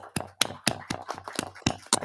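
A quick, regular series of sharp taps, about four a second.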